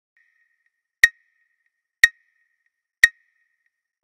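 Clock ticking once a second: sharp ticks, each followed by a short, bright ring.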